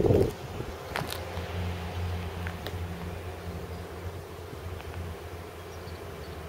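A steady low hum, with a few faint clicks about a second in and again near the middle.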